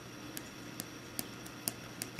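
Faint, light ticks of a stylus tip touching down on a tablet's glass screen while a word is written by hand, about four ticks spread over two seconds.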